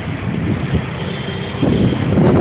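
Wind buffeting a phone microphone outdoors: a rumbling noise that swells and dips in gusts, with a faint thin high tone about halfway through.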